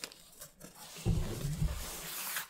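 Cardboard shipping box being handled and turned over, a scratchy rustle of cardboard and packing tape that grows about halfway through, with a sharp click at the start.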